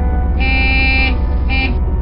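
Two horn honks, a longer one and then a short one, over background music and a steady low rumble.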